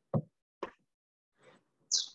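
Two short, soft knocks or taps a fraction of a second apart, then a brief high hiss near the end.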